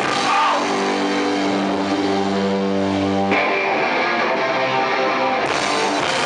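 Hardcore band playing live, loud distorted electric guitar to the fore. A sustained chord rings for about three seconds and cuts off abruptly, then the playing goes on.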